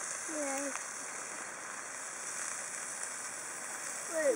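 A brief spoken call of a name under a second in, then a steady, even high hiss of outdoor background noise with no distinct events.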